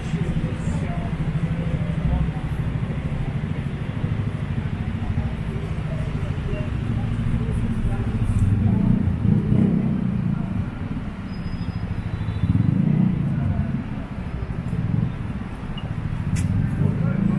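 Busy city street traffic: a steady low engine rumble from passing vehicles, swelling louder about halfway through and again around three-quarters of the way in, with passers-by's voices in the mix.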